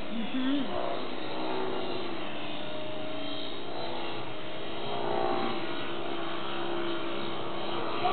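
Electric motor and propeller of a foam RC aerobatic plane in flight: a steady whine whose pitch shifts slightly as the throttle changes.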